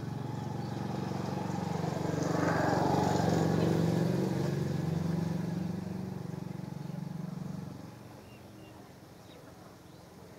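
A motor vehicle's engine passing by: it grows louder to a peak about three seconds in, then fades away by about eight seconds.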